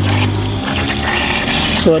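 Mains water hissing and spurting out of a leak at the Karcher K2 pressure washer's pump head while the motor is off; the owner takes the leak, perhaps a worn rubber seal, for the reason the pump cannot build pressure. A steady low hum runs underneath and stops about a second in.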